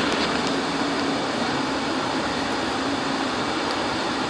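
Steady, even background hum of ventilation or room machinery, unchanging throughout.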